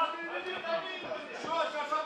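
Faint, indistinct voices from around the ring, much quieter than the commentary.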